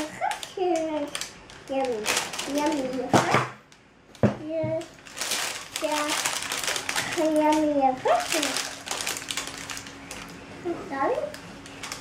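A young child talking and babbling in short high-pitched phrases, over the clicks and scrapes of a spatula against a plastic mixing bowl as batter is scraped into a paper-lined loaf tin.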